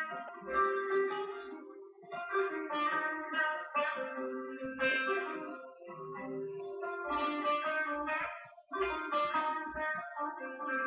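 Plucked string instrument music, guitar-like, played back through a television's speakers, in phrases of picked notes separated by short pauses.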